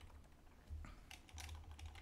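Faint computer keyboard typing: a scatter of quick, irregular key clicks over a low electrical hum.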